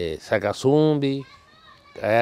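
A man's voice speaking a few words, followed by a faint, higher voice in the background.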